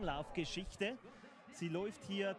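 Faint background speech, a voice talking quietly under the main commentary, dropping to near silence for about half a second in the middle.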